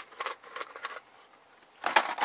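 Hard polymer rifle magazines, Bulgarian Circle 10 AK-pattern mags in 5.56, clacking against each other as they are handled. There are a few light clicks in the first second, then a louder clatter near the end as they are set back into a plastic storage tub among other magazines.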